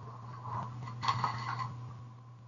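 Light clicking and rattling of small objects being handled, from about half a second in until shortly before the end, over a steady low hum.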